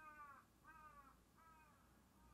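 Faint repeated bird calls: short, falling cries about every two-thirds of a second, growing fainter near the end.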